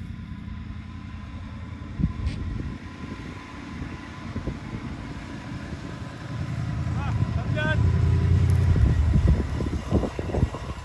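A Dodge Durango's engine running as it drives over a dirt track, growing steadily louder from about six seconds in as it comes close. A single knock sounds about two seconds in.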